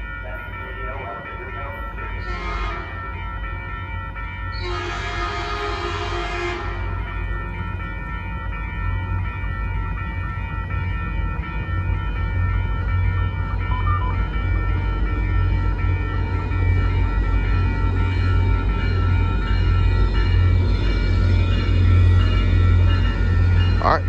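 Caltrain MP36 diesel locomotive approaching: its horn sounds a short blast a couple of seconds in, then a longer one. After that the low rumble of the locomotive grows steadily louder as the train nears.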